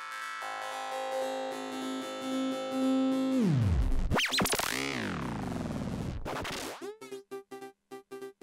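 Held synthesizer chord that dives in pitch about three seconds in, swoops up and down, then rises back. Near the end it is chopped into an even on-off pulse, about four a second, by a trance gate triggered from a Korg SQ-1 step sequencer.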